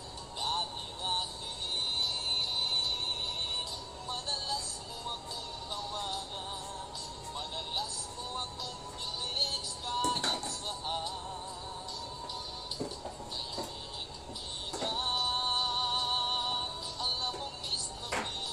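A Tagalog love song playing, a singer's voice holding long notes with vibrato.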